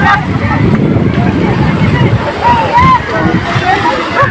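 Several voices calling out excitedly over the wash of surf in the shallows, with a loud low rumble throughout.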